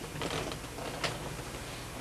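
Rotary control knob of an electric fan being turned, clicking, with one sharp click about a second in, over the steady hum of the fan running.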